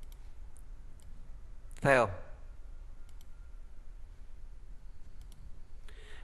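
A handful of faint, sharp clicks from the computer input device driving a drawing program as pen tools are picked, some coming in close pairs, over a low steady hum.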